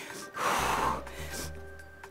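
A woman's forceful exhale of exertion during a plank exercise, one short breath of about half a second near the start, over background music with a low bass note.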